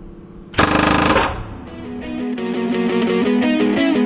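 A pneumatic impact wrench hammers in one short burst, about half a second long, a little way in. Then an electric-guitar rock track fades in and carries on.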